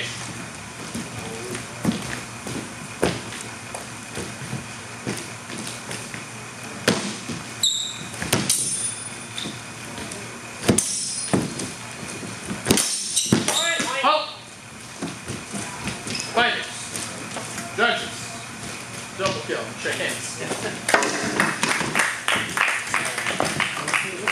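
Longswords knocking and clashing in a sparring bout, with two brief high metallic rings from the blades, among feet thudding and scuffing on a wooden floor.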